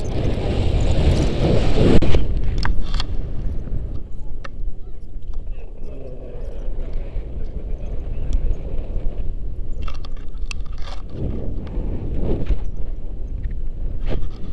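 Wind rushing over the microphone of a camera on a tandem paraglider during its running launch and lift-off, loudest in the first two seconds, then a softer steady rush in flight with a few light clicks.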